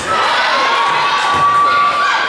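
High-pitched voices of a crowd cheering and shouting during a volleyball match, one voice holding a long call through the middle.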